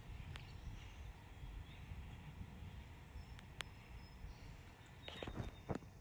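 Faint background ambience: a steady low rumble with a few faint clicks and a brief thin high tone about midway.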